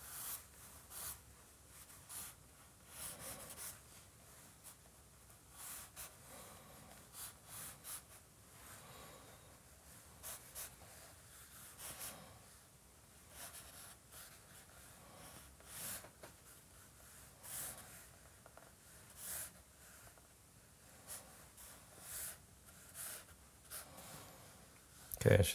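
Faint, irregular scratching strokes of a charcoal stick on drawing paper, short quick lines following one another unevenly.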